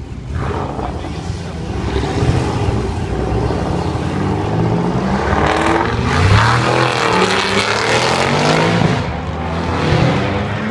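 Cars and a pickup truck driving past on a street, their engines accelerating. One vehicle passes close about six to eight seconds in, and another engine revs upward near the end.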